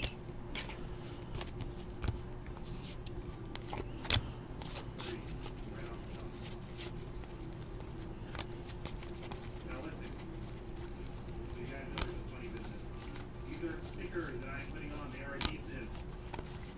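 Stack of Panini NBA Hoops basketball cards being sorted and flipped through by hand: light scattered clicks and snaps of card stock as cards slide off the pile, a few sharper ones now and then, over a steady low hum.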